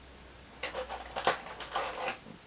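Plastic action figures and toys being handled by hand: a run of small clicks, clatters and rustles starting about half a second in.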